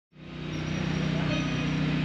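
A steady low mechanical hum from a running motor, over constant outdoor background noise. It fades in quickly right at the start, out of complete silence.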